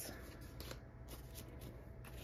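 Faint rustling and light handling of paper, a few soft crisp rustles such as paper bills or binder pages being handled.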